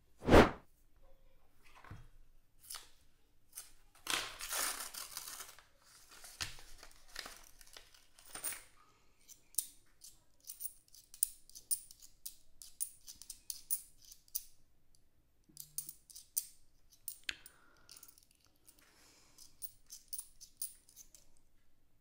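A loud knock just after the start, then a paper roll of quarters torn open, followed by many light clicks of quarters tapping against one another as they are thumbed through one by one.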